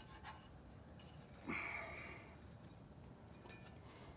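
Faint handling sounds of string being wrapped by hand around a bandsaw wheel and its urethane tire: light rubbing and a few small clicks, with one brief louder rustle about a second and a half in.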